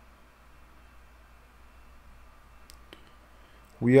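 Quiet room tone with a faint low hum, broken by two brief faint clicks near the end; a man's voice starts just before the end.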